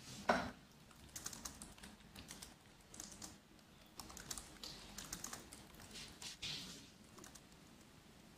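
Computer keyboard typing: an irregular run of faint keystrokes.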